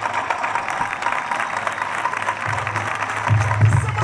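Crowd clapping and applauding, with music underneath. A low bass comes in about two and a half seconds in and grows louder near the end.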